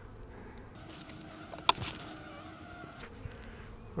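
Honey bees buzzing at an opened hive, a faint steady hum. A single sharp click sounds a little under halfway through.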